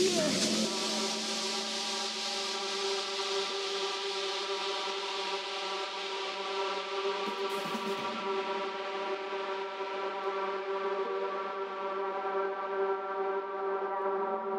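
Breakdown in a tech house track: the kick drum drops out and a sustained synth chord holds steady under a wash of noise that slowly fades away.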